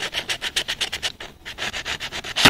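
P120 sandpaper scrubbed quickly back and forth over the copper commutator bars of a starter motor armature, a fast, rhythmic scratching as the bars are sanded clean and shiny.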